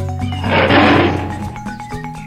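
A tiger's roar, played as a sound effect for about a second starting about half a second in, over light background music with steady notes.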